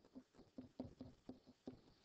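Faint, quick, irregular taps and scratches of a pen writing on a writing surface.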